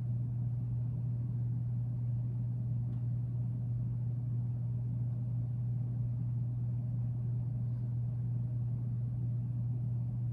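A steady low hum that does not change.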